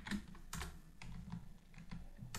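A computer keyboard being typed on, a few separate faint keystrokes.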